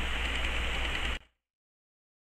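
Steady background hiss with a low electrical hum from the recording, cutting off abruptly into dead silence about a second in, at an edit.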